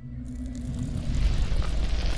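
A rumbling, swelling whoosh, the sound effect of an intro logo bursting into flame. A hiss comes in about a quarter second in, and the whole sound grows louder toward the end.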